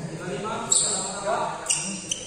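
Badminton rackets striking a shuttlecock during a doubles rally: two sharp hits with a brief high ring, about a second apart, in a reverberant hall.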